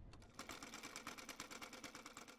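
Quiet sewing-machine stitching: a rapid, even run of mechanical clicks that starts shortly after the beginning.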